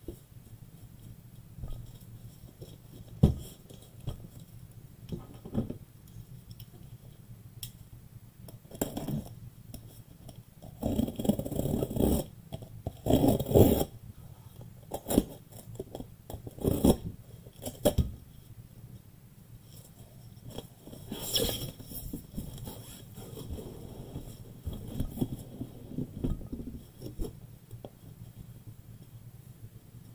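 Cardboard case of sealed hobby boxes being opened and unpacked by hand: scattered knocks as boxes are set down and stacked, with bursts of cardboard scraping and rustling in the middle as they are slid out of the case.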